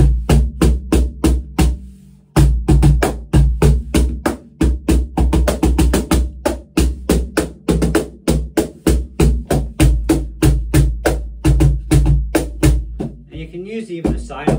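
Pearl Music Genre Primero box cajon played by hand in a steady groove, about three to four strokes a second, with a brief pause about two seconds in. Deep bass thumps from the centre of the meranti face plate alternate with crisp slaps that rattle its fixed curly snare wires. At times a heel pressed against the face plate changes the tone.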